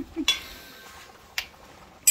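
A single short clink of a metal spoon against cookware, about one and a half seconds in, over a low background.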